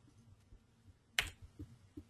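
A single sharp keystroke on a computer keyboard about a second in, followed by a couple of much fainter ticks.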